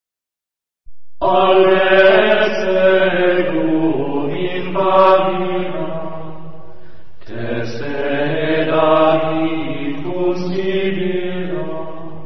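Chanting voice intoning long, held mantra phrases over a steady low drone, starting about a second in after a moment of silence, with a brief break near the middle.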